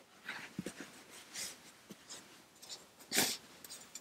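Fabric rustling as a thin prayer rug is rolled up by hand: a few soft swishes, the loudest about three seconds in.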